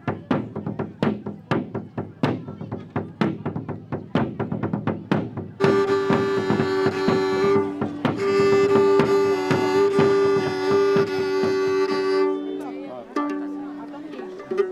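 A bowed medieval fiddle (vielle) playing sustained notes over a steady lower drone, with the notes changing near the end. Before it, for the first five seconds or so, comes a run of quick, even percussive strikes.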